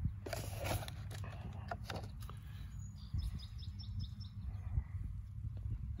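Hands scraping and pressing loose soil and wood-chip mulch into place around a seedling: scattered rustles and crunches, mostly in the first two seconds.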